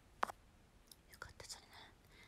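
A woman faintly whispering under her breath, with a sharp mouth click about a quarter of a second in and a few small clicks later.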